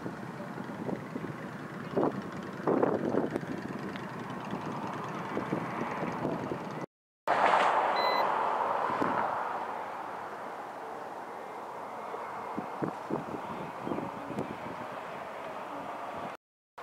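Roadside traffic noise with a few knocks about two to three seconds in. After a cut about seven seconds in, a vehicle passes close, its sound loud at first and fading over a few seconds, with a brief high beep as it goes by.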